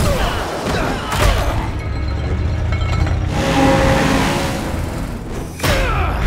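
Action-cartoon soundtrack: dramatic music under heavy crashing and rumbling sound effects, with loud impacts at the start, about a second in, and again near the end.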